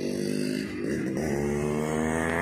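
A motor vehicle engine humming, its pitch wavering at first, then steadying from about a second in and slowly falling.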